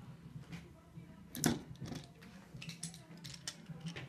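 Scattered handling clicks and knocks from a wooden block being pressed onto a wakeboard and a metal screw clamp being picked up, with one sharper knock about a second and a half in.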